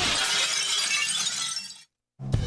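A crash with a hissing, shatter-like wash that dies away over nearly two seconds and fades out into silence, closing off a music track.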